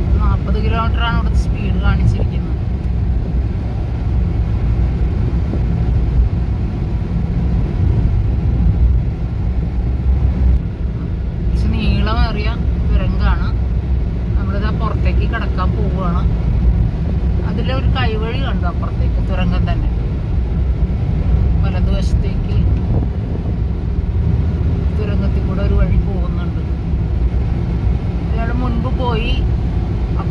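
Steady low road and engine rumble of a car driving through a road tunnel, heard from inside the cabin, with people talking at intervals.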